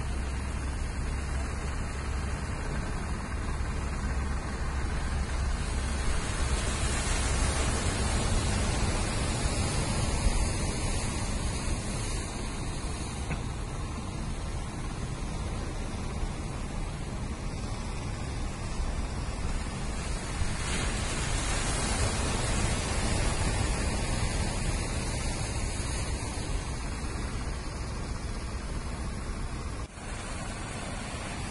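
Sea surf breaking and washing on the beach: a steady rushing noise that rises and falls in slow surges every several seconds.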